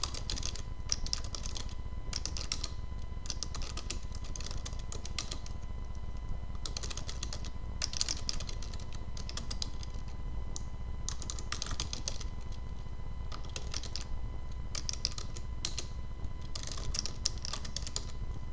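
Computer keyboard typing in quick runs of keystrokes with short pauses between runs, over a faint steady low hum.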